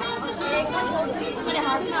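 Overlapping chatter of many guests talking at once in a room, with no single voice standing out.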